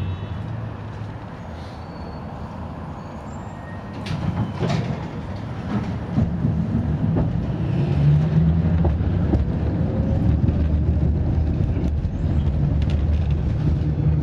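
Cabin noise of a moving city bus heard from inside: a steady low engine and road rumble with scattered rattles and knocks. It grows louder about four seconds in and again a few seconds later.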